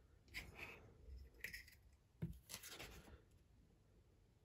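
Near silence broken by three faint, short bursts of rustling and scraping, like small handling noises close to the microphone.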